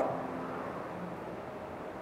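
Print carriage of a Focus Atlas 1311 UV flatbed printer being driven along its gantry during an X-axis jog test, a faint steady mechanical hum with a low whine that fades out within the first second.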